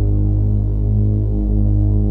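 Electronic ambient house track at a held passage: a deep synthesizer chord sustained steadily, with no drums.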